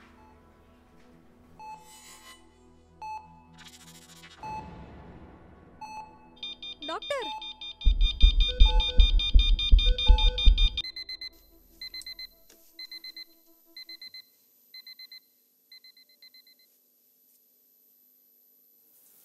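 Film sound design: sparse music notes with two whooshes, a gliding swell, then a loud rapid pounding under shrill held tones that cuts off about eleven seconds in. A patient monitor then beeps about once a second, each beep fainter, until the beeps stop near the end, over a steady high-pitched ringing tone.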